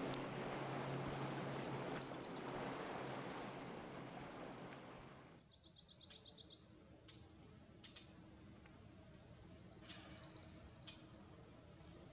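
Steady outdoor background noise with a brief run of fast, high clicking notes about two seconds in. After a sudden drop to quiet, a small bird gives a series of quick high chirps, then a fast high trill of about two seconds, the loudest sound.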